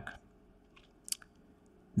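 A man's voice trails off at the start, then near quiet in a small room, broken by one faint short mouth click about a second in.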